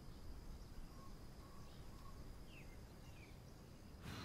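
Faint outdoor nature ambience with a few short, high bird chirps scattered through it over a soft background hiss.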